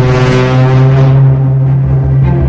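Dramatic background music: one long, low, brass-like note held steady over a pulsing low drum beat.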